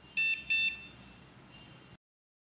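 An 880 dog training collar's receiver beeping twice in quick succession, a short high electronic "bi-bi". This is its sound (tone) function answering the sound button pressed on the handheld remote.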